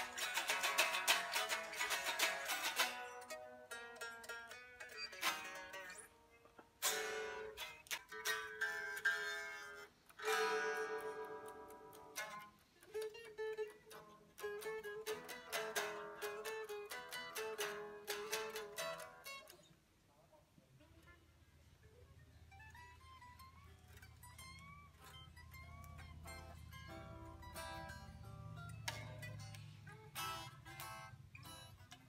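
Electric guitars being strummed and picked while being tuned. The strings ring thin and bright for most of the first twenty seconds. Then it drops to quieter single notes, several sliding up in pitch as a string is tuned, over a low steady hum.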